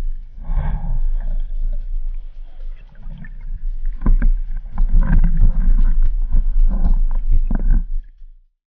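Muffled underwater rumble and sloshing of water picked up by a camera in a waterproof housing, with a quick run of knocks and clicks in the second half.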